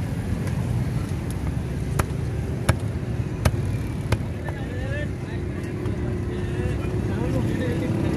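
Heavy cleaver chopping rohu fish into pieces on a wooden log chopping block: a series of sharp chops in the first half, over a steady low background rumble.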